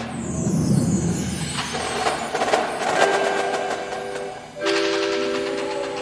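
Indoor percussion ensemble music: a high falling swoosh over drum strikes opens it, and a held chord of several steady tones comes in about four and a half seconds in, with scattered drum hits.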